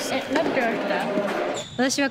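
Women speaking Japanese, with a couple of sharp knocks, one at the start and one near the end.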